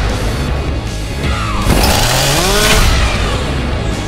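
Dark trailer score with a steady low pulse. About one and a half seconds in, a loud burst of noise with several sweeping pitch glides, rising and falling, lasts about a second.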